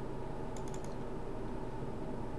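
Computer keyboard keys typed in a quick run of four or five clicks about half a second in, over a steady background hum.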